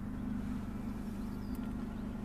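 Citroen C4 Grand Picasso's 1.6 HDi four-cylinder diesel engine idling steadily, heard from inside the cabin as a low, even hum.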